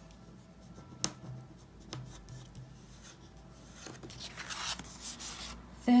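Quiet handling of a paper card on a wooden table: a sharp tap about a second in, then paper rubbing and sliding near the end.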